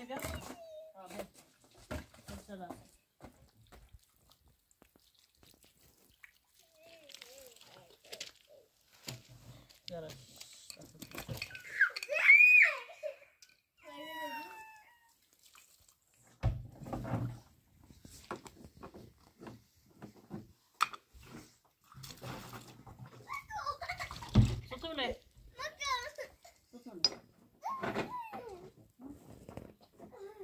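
Intermittent voices of women and children talking and calling, the loudest a single high call about twelve seconds in, among a few dull thuds and scrapes of stones being handled.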